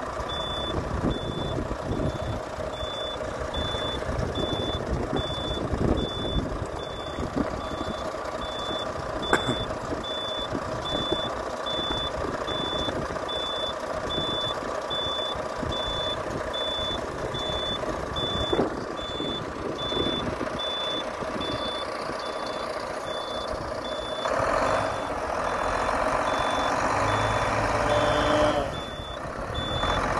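Iveco Trakker 410 hook-lift truck running with its diesel engine on while the hydraulic hook arm is worked, a high warning beeper pulsing evenly throughout. Near the end a louder whine from the engine and hydraulics comes in for a few seconds, then stops suddenly.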